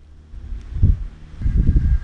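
Wind buffeting the microphone: a low rumble in gusts, dropping off at the start and picking up again in the second half.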